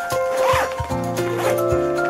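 A backpack zipper pulled once, about half a second in, over background music with a steady beat.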